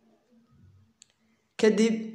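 A quiet stretch with one short, sharp click about halfway through, then a man's voice starts speaking near the end.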